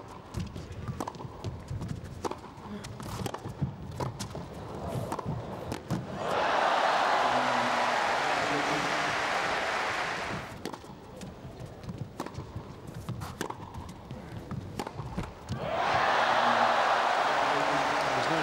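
Tennis rally: ball struck back and forth by rackets with bounces and shoe scuffs on the court, broken off about six seconds in by crowd applause. A second run of ball strikes follows, and the applause comes up again near the end.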